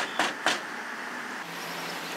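Knocking on a front door: a quick run of evenly spaced raps, about four a second, that stops about half a second in. After that there is only a steady background noise.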